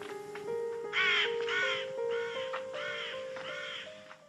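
A crow cawing five times in a row, starting about a second in, over slow music of long held notes.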